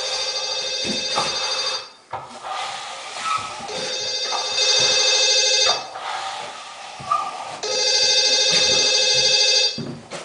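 A phone ringing with an electronic ringtone: three rings about two seconds long, with pauses of about two seconds between them.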